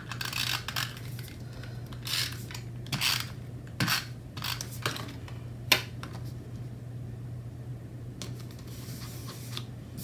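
A handheld adhesive tape runner drawn across paper in several short strokes, with paper handled and pressed down onto a notebook page, and a single sharp click about six seconds in. The rest is quieter paper handling.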